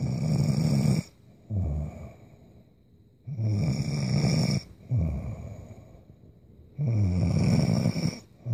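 A woman snoring in her sleep. Three long snores come about three and a half seconds apart, near the start, a little past three seconds and about seven seconds in. Each is followed half a second later by a shorter second sound.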